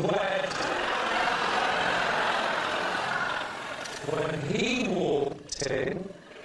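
Studio audience laughing, a dense crowd sound that fades after about three and a half seconds, followed by a voice speaking.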